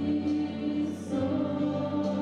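Group of young women singing together into microphones, holding long notes; the notes change a little after a second in.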